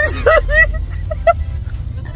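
High-pitched laughing and squealing voices in the first second or so, over the steady low rumble of a car's cabin while driving.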